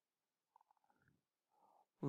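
Near silence: a pause in the narration, with only very faint room tone.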